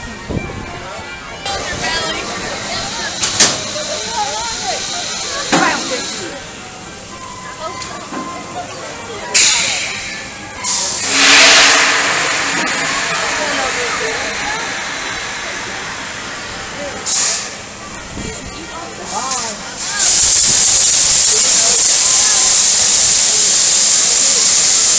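Pneumatic launch tower of a double-shot ride hissing compressed air while its riders sit at the base before the launch. There are a few short hisses, then a rush of air that fades over several seconds. For the last four seconds a loud, steady, high hiss runs, with people's voices underneath.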